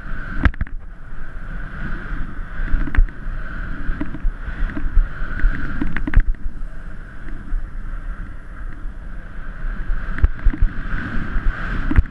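Wind rushing over an action camera's microphone and snow hissing underfoot during a fast downhill run through powder, broken by several sharp knocks from bumps and the camera mount.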